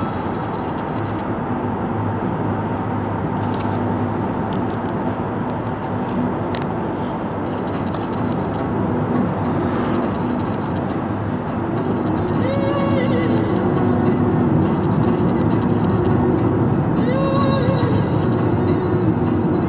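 A car driving at steady road speed, with a continuous rumble of tyre and engine noise.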